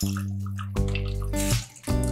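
Water pouring in a thin stream into a pot of simmering curry, under background music whose pitched notes change about every half second or so and are the loudest sound.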